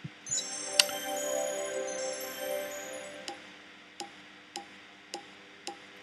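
Online video slot game sounds: a shimmering chime jingle rings out for a couple of seconds and fades, then five sharp clicks come about 0.6 s apart as the reels stop one after another.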